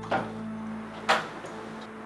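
Front door's lock and latch clicking as it is unlocked and opened by hand: a soft click near the start and a sharper, louder one about a second in.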